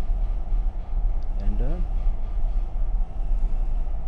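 A steady low rumble, with a couple of faint clicks about a second in.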